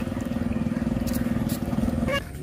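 A small engine running steadily, with a fast, even throb.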